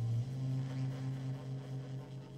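Closing chord of a live jazz ballad ringing out, with a low held bass note under it, shifting up slightly just after the start, and the whole sound slowly fading away.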